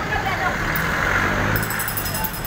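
Street traffic, with a motor vehicle passing; its noise swells to a peak about a second and a half in.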